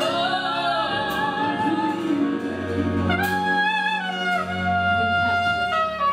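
Slow gospel song: a woman singing long, sliding held notes through a microphone over a steady accompaniment.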